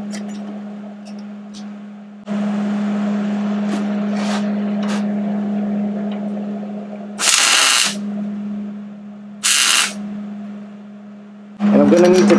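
Welder humming steadily, with two short bursts of arc-welding crackle about two seconds apart: tack welds on a steel panhard-bar bracket tab.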